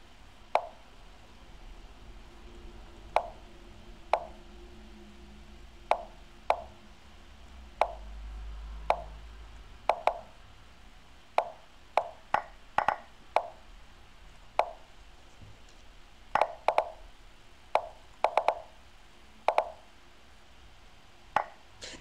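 Lichess chess-move sound effects: about twenty short plopping clicks at irregular intervals, some in quick pairs. Each click marks a move played by one side or the other in a fast bullet game.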